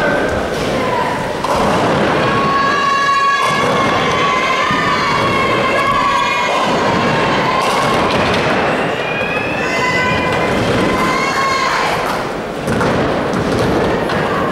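Ninepin bowling: balls thudding onto and rolling down the lanes, and pins clattering over and swinging on their pinsetter strings. Long held shouts from spectators ring out over it.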